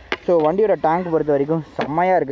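A man talking: continuous speech.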